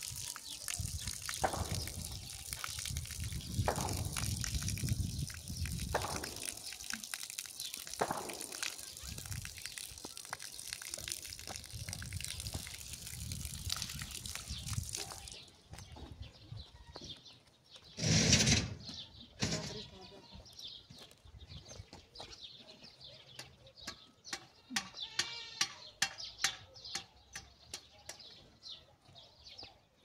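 Water running from an outdoor standpipe tap, a steady hiss that cuts off suddenly about halfway through as the tap is turned off. A loud, brief burst follows a few seconds later, then scattered small clicks.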